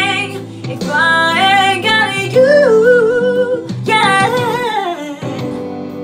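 A woman singing a soulful, sliding vocal line over a sustained instrumental backing. The voice stops about five seconds in, leaving the backing chords held.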